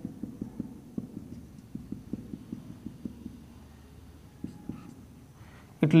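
A marker dabbing small dots onto a whiteboard: a quick run of soft, low taps, several a second, that thins out a little past halfway.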